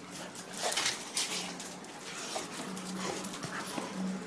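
Several excited dogs moving about close by, whimpering softly, with scattered clicks and scuffles of paws on a hard floor.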